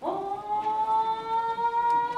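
A single long held note in kagura accompaniment, scooping up in pitch as it starts and then held steady; whether it is a chanted voice or a bamboo flute is not clear.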